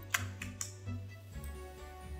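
Quiet background music with about three sharp computer-keyboard key clicks in the first second, the first the loudest.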